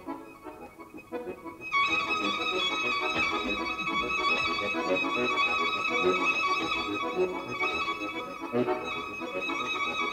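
Violin and bayan (button accordion) playing a classical duet. The opening is soft and low, then about two seconds in it gets much louder, with a high violin line ringing over busy playing beneath.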